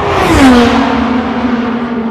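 An IndyCar race car passing at full speed, its 2.2-litre twin-turbo V6 loudest about half a second in. As it goes by, its note drops sharply in pitch, then carries on as a steady, lower tone fading away.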